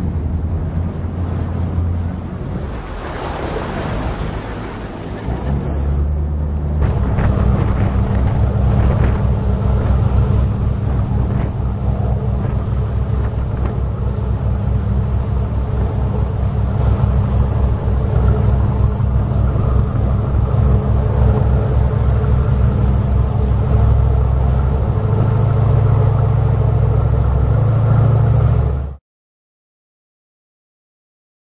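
A motorboat's engine running, with water rushing along the hull and wake. The engine gets louder and steadier about seven seconds in as the boat gets under way, and the sound cuts off abruptly near the end.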